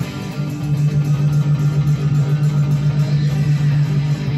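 Fender Jaguar electric guitar picked in fast, even strokes on a held low chord, changing chord just after the start and ringing steadily through.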